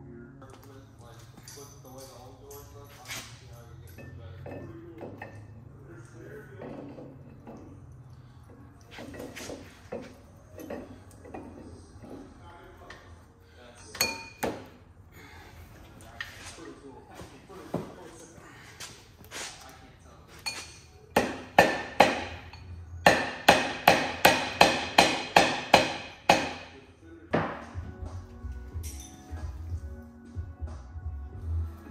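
Scattered metal clinks and knocks from work on a VW Beetle engine's flywheel, then a run of about a dozen sharp metallic strikes, roughly four a second, lasting a few seconds near the end.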